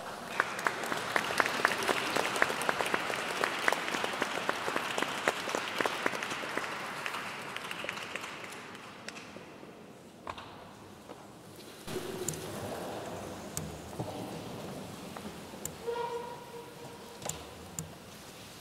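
Audience applauding, a dense patter of clapping that thins out and fades away over about nine seconds. It is followed by scattered knocks and small handling noises as the soloists take their places.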